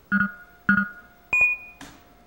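Short electronic game-show chime tones, three in quick succession, the third higher and ringing longer: a quiz-show sound effect as the contestants' answer screens light up.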